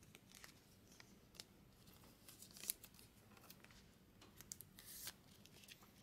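Faint rustling and a few light clicks from a trading card being handled and slid into a clear plastic card holder.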